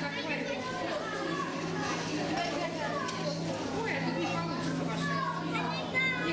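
Background chatter of many visitors, with children's voices among them, over a steady low hum.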